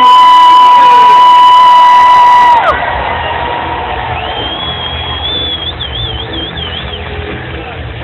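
A fan close by lets out a long, loud whoop of about two and a half seconds, rising at the start and dropping off at the end, over a cheering stadium crowd. About four seconds in, a high shrill whistle is held and then warbles before it stops.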